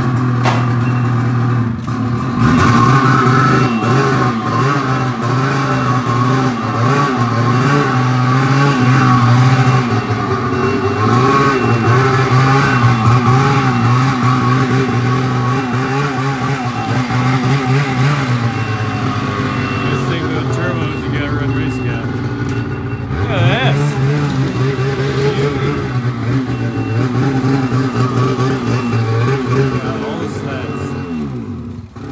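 Ski-Doo Summit 850 turbo snowmobile's two-stroke twin engine running on its first start after the broken exhaust was welded up, idling with the revs rising and falling. About two-thirds of the way through the revs drop and then climb again.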